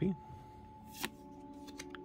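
A Yu-Gi-Oh trading card being slid off the front of a hand-held stack and moved behind the others, with one sharp flick about a second in.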